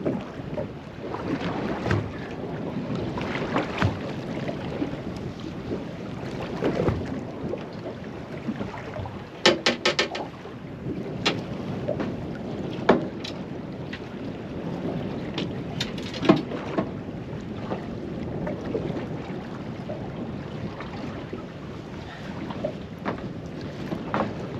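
Wind on the microphone and water lapping against a small boat's hull on the drift, with scattered sharp knocks and clicks as a hooked fish is wound in and landed, including a quick run of clicks about ten seconds in.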